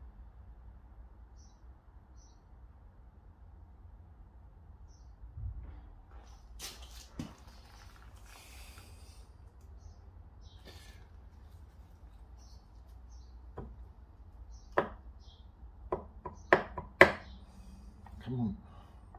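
Metal engine parts being handled on a motorcycle crankcase as bolts and a cover are taken off. There are scattered light clicks and taps, then a quick run of sharper metallic knocks in the last few seconds, over a low room hum.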